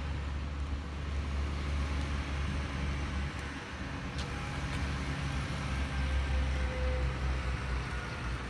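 Steady low rumble of road traffic, a motor vehicle's engine hum running throughout.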